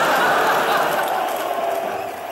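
Studio audience laughing, a dense crowd sound that slowly dies down.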